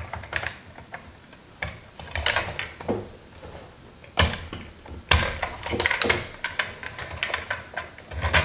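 Plastic joints and parts of a Hasbro Rescue Bots Heatwave transforming toy clicking and rattling as they are turned and snapped into place. An uneven series of sharp clicks, the loudest about four and five seconds in.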